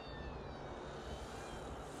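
Faint whine of a flying RC flying wing's 5010 brushless motor and folding propeller, sliding slightly down in pitch over a steady hiss.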